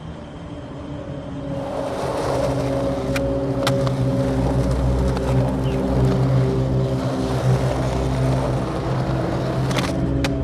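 Skateboard wheels rolling over rough pavement, the rolling noise building over the first couple of seconds and then holding steady, with a few sharp clacks of the board, two close together a few seconds in and one near the end.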